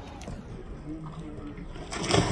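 Faint voices over quiet outdoor swimming-pool ambience; at the very end a person's body hits the water in a loud splash as he lands a backflip into the pool.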